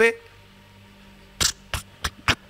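A pause with low room noise, then two short, sharp clicks or taps about a third of a second apart in the last half-second.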